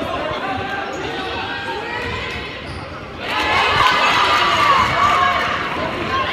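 A basketball bouncing on a hardwood gym floor during play, with players and spectators calling out in the hall. The voices grow louder about three seconds in.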